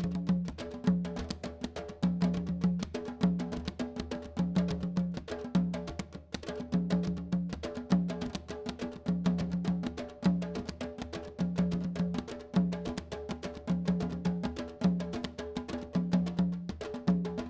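Candombe drum ensemble (chico, repique and piano tambores) playing a steady interlocking rhythm with one stick and one bare hand each. The drums give sharp stick clicks on heads and wooden shells over a deep drum figure that repeats about every two seconds.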